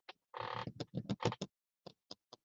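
A short rustle of card stock and paper being handled on the desk, followed by a quick run of light clicks and taps.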